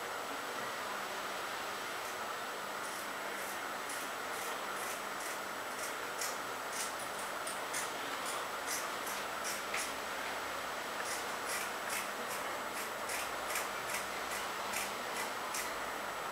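Kitchen scissors snipping off the fins of a sole: a run of short, crisp snips, a few a second, with a brief pause partway through, over a steady hiss.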